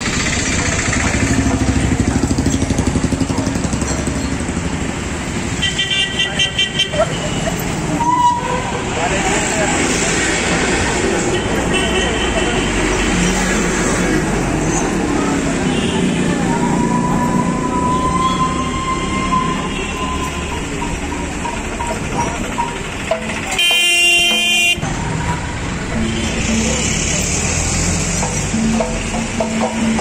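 Street traffic with motorbikes and cars passing and several vehicle horn honks. The loudest is a blast of about a second roughly three-quarters of the way through.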